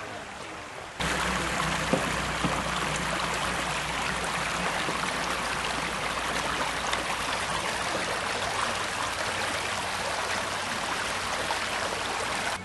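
Shallow creek water running over rocks: a steady rushing that starts suddenly about a second in.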